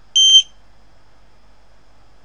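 Piezo buzzer on an RFID reader board giving one short, high, steady beep near the start, the sign that a tag has been read.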